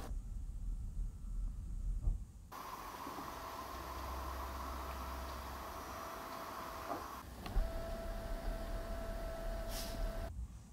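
Electric motor of a Mercedes-AMG GT 43 4-Door Coupé's rear spoiler running: a steady whine starting a couple of seconds in and lasting about four seconds, then after a brief pause running again at a slightly lower pitch.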